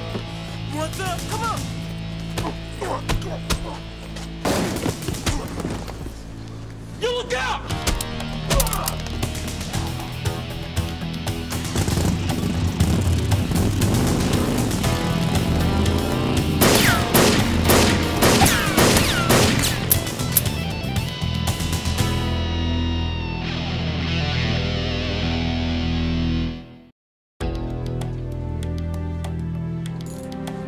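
Action-scene TV soundtrack: music under shouting and fight sounds, with rapid bursts of gunfire in the middle. Everything then drops out suddenly near the end.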